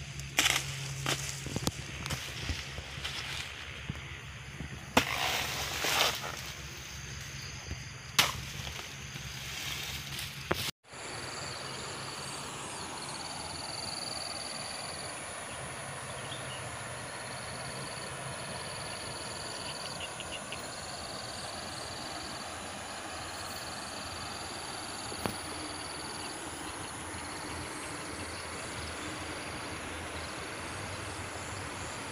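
A few sharp knocks and rustles at close range, then, after a sudden break, a steady rush of flowing river water under insects shrilling in repeated pulses with a thin steady high whine.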